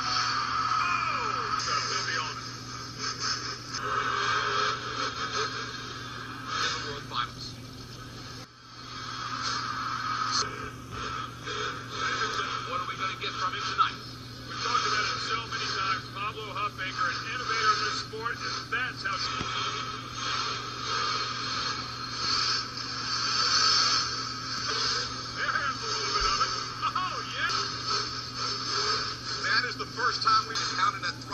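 Monster truck engine revving and arena crowd noise, rising and falling, in a muffled broadcast recording over a steady low hum.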